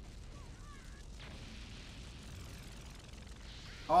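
Faint, steady noise from an anime fight scene's sound effects playing quietly, with no clear single impact.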